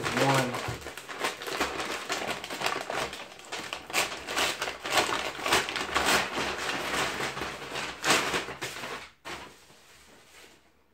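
Plastic bag crinkling and rustling in dense, irregular crackles as it is torn open and pulled off a sneaker, stopping about nine seconds in.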